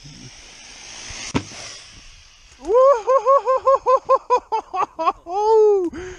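An Arrma Typhon RC buggy's motor and tyres whine, building as it speeds in, with a sharp knock about a second and a half in as it hits the ramp. Then a person whoops 'woo-hoo-hoo' in quick repeated calls, ending on a long held 'woo'.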